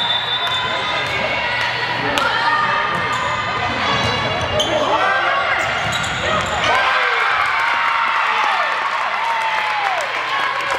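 Indoor volleyball rally on a hardwood gym floor: sharp hits of the ball and squeaking sneakers, under the steady chatter and shouts of spectators echoing in the hall.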